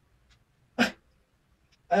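A single short, breathy scoff from a person about a second in, otherwise near silence.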